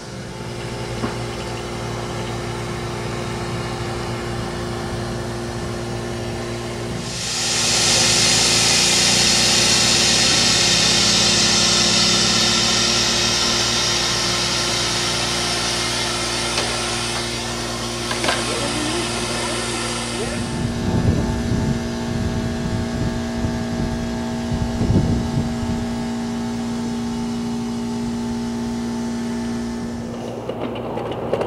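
A loud, even hiss of steam from a live-steam locomotive lasts about thirteen seconds, starting and stopping abruptly, over a steady low mechanical hum. A few low knocks and bumps follow near the end.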